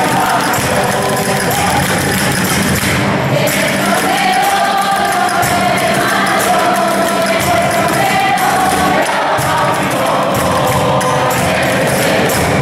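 A group of voices singing a hymn together, accompanied by strummed guitars keeping a steady rhythm, with long held notes.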